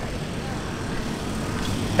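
Steady low rumble of city traffic with a faint steady hum, no distinct events.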